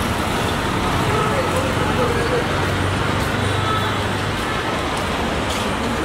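Steady traffic and idling car-engine noise: a constant low hum under an even hiss, with faint voices in the background.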